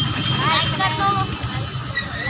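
A voice speaking in short phrases over a steady low background rumble.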